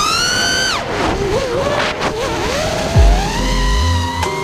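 Racing quadcopter's brushless motors (T-Motor F40 II 2400kv) whining, the pitch climbing, dropping sharply just under a second in, wavering, then climbing again and holding as the throttle changes. Background music plays along, with a heavy bass coming in about three seconds in.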